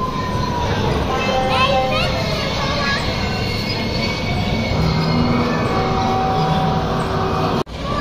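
Arcade and kiddie-ride din: held electronic tones and jingles from the game machines over a steady mechanical rumble, with a few short chirping sounds early on. It cuts out abruptly just before the end.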